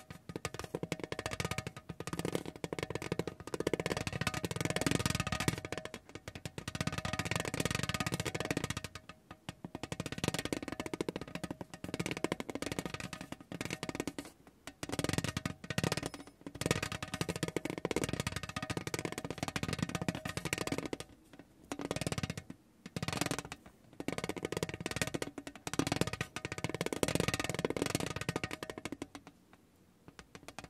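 Spiky rubber massage ball rolled and pressed by hand across a tin tray: a dense, rapid clatter of its nubs tapping the metal, in stretches broken by brief pauses.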